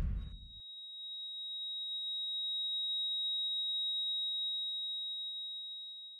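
The booming tail of a basketball bounce on a hardwood arena floor dies away in the first half second. Then a single steady high electronic beep, a heart-monitor flatline tone, fades in, holds and fades out at the end.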